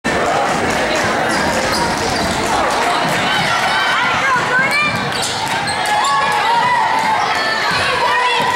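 Basketball game on a hardwood gym court: the ball bouncing and short high sneaker squeaks, over steady crowd chatter and shouts.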